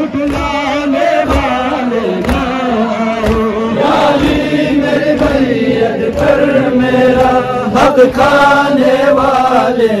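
A crowd of young men chanting a nauha, a Shia mourning chant, loudly in unison. Low thumps about once a second sound under the voices in the first few seconds, typical of hands beating on chests in matam.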